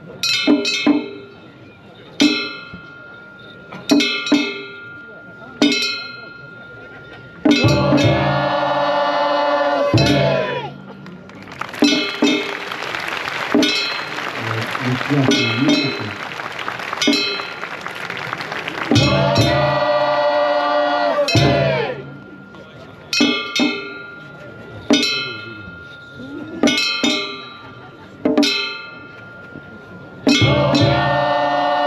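Festival float music: a small metal hand gong struck in a slow, steady beat, each stroke ringing briefly. Twice it is joined by a few seconds of loud group chanting, and a dense noisy stretch fills the middle.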